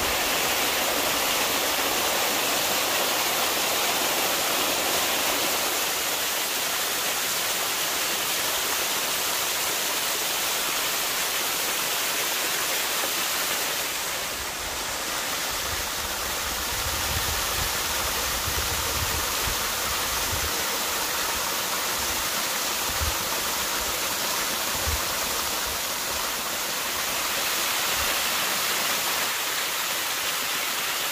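Small waterfall pouring over mossy rocks: a steady rush of falling and splashing water, with a couple of brief low thumps on the microphone a little past the middle.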